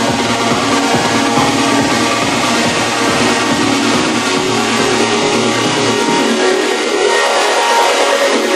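Techno music from a DJ set, with a steady beat. The bass and kick drop out about six seconds in.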